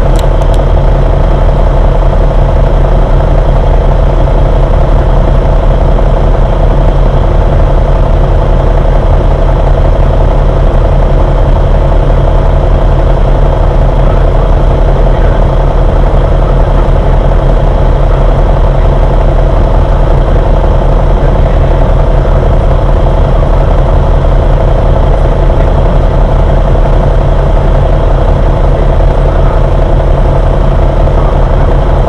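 City bus engine running, a loud, steady low drone heard from inside the passenger cabin.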